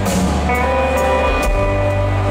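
Live country band playing an instrumental passage: acoustic guitar, bass guitar and drum kit, with drum strokes about twice a second.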